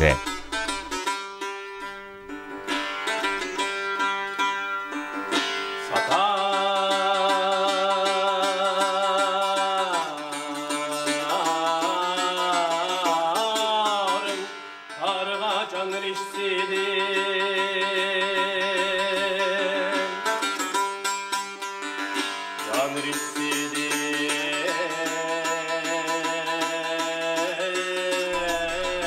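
Uyghur muqam: a man sings long held notes with wide vibrato and sliding ornaments, accompanied by a plucked long-necked lute. The voice breaks off briefly between phrases several times.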